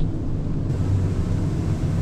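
Steady low drone of a ship's engine-room ventilation blower, the only machinery running while the generators and engines are shut down.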